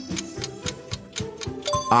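Countdown-timer ticking sound effect, a rapid even clock tick over background music, with a short pitched tone near the end as the timer runs out.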